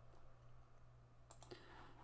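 Near silence with a low steady hum and a few faint computer mouse clicks about a second and a half in, as windows are clicked closed.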